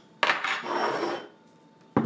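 Frozen pancakes being handled on a plate: a rough scraping sound about a second long, then a single sharp knock near the end.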